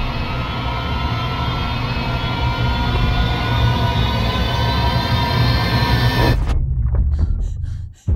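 Film-trailer score: a loud, sustained drone of many held tones over a deep rumble, rising slightly in pitch. It cuts off suddenly about six and a half seconds in, leaving the low rumble and a faint rapid pulsing.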